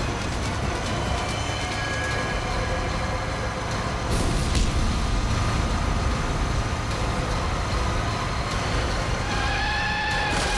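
Vehicle engines running during a road chase, a steady low rumble with the held tones of a background music score over it. The sound gets louder about four seconds in.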